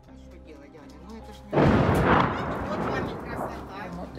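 One loud artillery blast about one and a half seconds in, hitting suddenly and then dying away over about two seconds.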